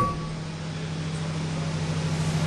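A steady low hum with a faint hiss: the background hum of a microphone and public-address system, heard in a pause between spoken phrases.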